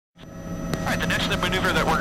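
Bell 206B helicopter cabin noise fading in out of silence: the steady drone of the turbine engine and rotor with a constant hum, heard through the crew intercom. A man's voice starts talking over it about a second in.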